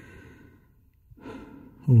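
A man's soft sighing breaths close to the microphone: one at the start, and another about a second later just before he speaks again.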